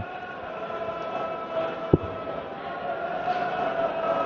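Murmur of an arena crowd with a steady hum, and a single low thud about two seconds in as a thrown dart strikes the dartboard.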